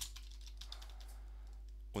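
A few faint keystrokes on a computer keyboard, over a steady low electrical hum.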